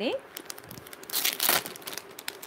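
Clear plastic jewellery pouches crinkling as they are handled, with scattered crackles and a louder crinkly burst about a second and a half in.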